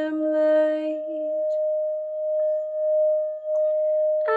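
A Tibetan singing bowl played by circling a wooden mallet around its rim: one steady ringing tone that swells and fades gently. A woman's sung note overlaps it for the first second and a half.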